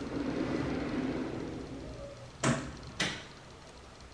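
A bathroom door sliding shut with a low rumble, then two sharp knocks about half a second apart as it meets the frame and latches.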